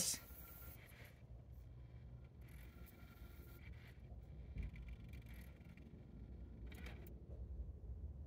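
Faint mechanism noise from the MiniDisc drive of a Sony MXD-D3 CD/MiniDisc combo deck while it writes the table of contents to the disc: a low hum with a few soft clicks.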